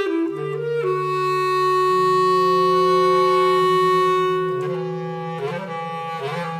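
Bass clarinet holding a long note that swells to a peak about halfway and then eases off, over a lower, slightly wavering sustained tone, so that several pitches sound at once.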